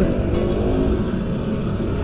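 Steady low rumble of a motorbike riding in city traffic, engine and wind noise, with background music underneath.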